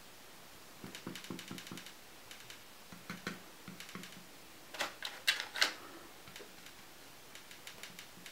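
Quick light clicks and taps of a paintbrush handling wax, the brush knocking against the metal muffin-tin paint pots and dabbing onto the painted board. They come in short irregular clusters, the loudest a little past the middle.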